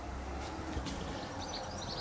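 Faint outdoor background in a pause between speech: a low rumble in the first half and thin, distant bird chirps in the second half.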